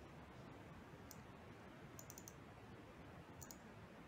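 Faint clicks of a computer mouse over a quiet room hiss: one click about a second in, a quick run of four about two seconds in, and two more near the end.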